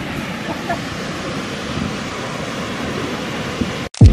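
Steady wash of ocean surf on a sandy beach, mixed with wind buffeting the phone's microphone; it cuts off suddenly near the end.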